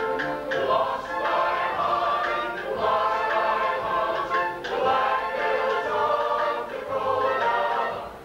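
Stage musical cast singing a song together in chorus.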